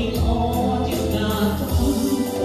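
Live dance band playing a Khmer rumba with a steady beat.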